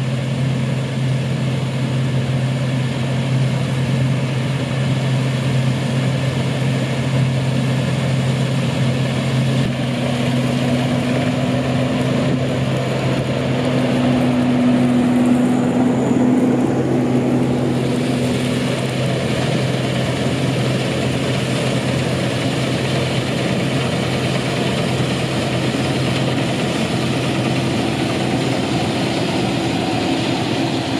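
Massey Ferguson 40RS combine harvester and a Fendt tractor running steadily while cutting wheat and unloading grain on the move. The tractor and grain trailer pass close by about halfway through, with a brief rise in loudness and a higher engine note, then the combine's machinery comes past near the end.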